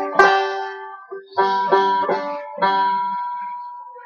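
An old banjo, a yard-sale instrument pieced back together from parts, strummed: about five chords struck in quick succession, the last one left to ring and die away.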